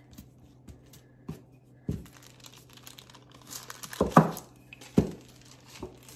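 A thin craft sheet crinkling and rustling as hands press and smooth clay flat on it over a stone countertop, with a few dull knocks about two, four and five seconds in.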